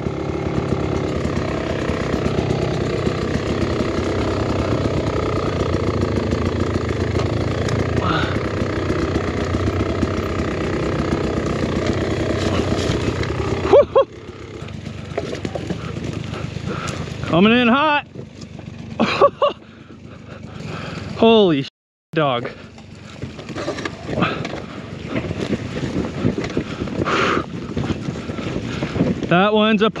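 Dirt bike engine running steadily and loudly, cut off abruptly about halfway through. After that the engine goes on more quietly under a few short laughs and exclamations from the rider.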